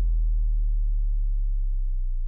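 The song's final note: a deep electronic bass tone held after the last beat and slowly fading, with faint higher overtones dying away above it.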